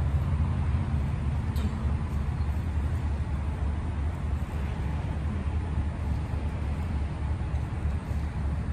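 Steady low rumble of highway traffic noise.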